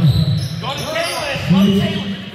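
Basketball game in an echoing gym: the ball bouncing on the court amid voices calling out from players and the bench, with a loud shout near the end.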